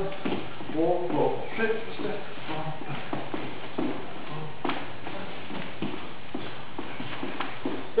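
Dance shoes stepping and tapping on the floor in irregular beats as Lindy hop footwork is shown, with some quiet speech.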